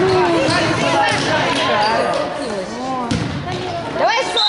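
Basketballs bouncing, several sharp knocks, under the overlapping chatter and shouts of many children.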